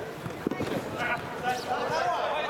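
A football kicked on artificial turf, one sharp thud about half a second in and a few lighter touches after, with players' voices calling out.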